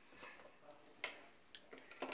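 Mostly near silence, broken by two or three light clicks of plastic Lego pieces being handled and set down, the clearest about a second in.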